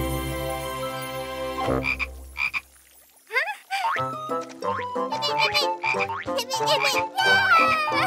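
Animated cartoon frog croaking. A long held tone fades out in the first few seconds. Then comes a quick run of short, bouncy croaks and chirps that bend in pitch, over short low notes.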